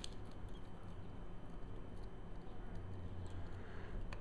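A few faint clicks and ticks from handling the lens's metal mount ring and contact plate, over a steady low hum.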